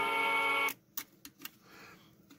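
Hockey goal light sounding through its small speaker, a steady chord of tones that cuts off abruptly under a second in. A few light clicks follow as the unit is handled.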